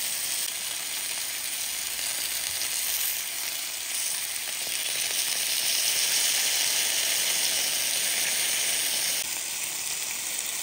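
Chicken breasts sizzling on a hot ridged grill pan, a steady hiss that grows a little louder about four seconds in and drops back just before the end.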